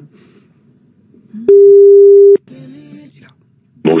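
Telephone ringback tone on an outgoing call: one loud steady beep a little under a second long, about a second and a half in. Faint line noise comes before and after it.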